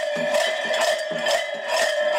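Parade music: a steady held note, like a drone, with a sharp beat about twice a second, like a drum.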